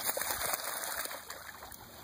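Lake water splashing and sloshing as a large dog paddles and wades through the shallows, louder for about the first second and then settling.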